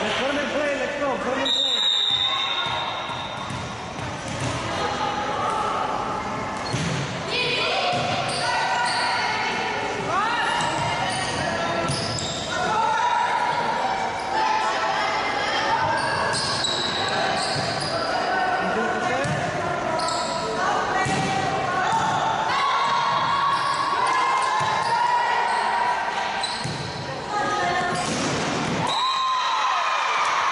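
Volleyball being played in a gym: the ball is hit and bounces repeatedly amid players' shouts and calls, echoing in the large hall.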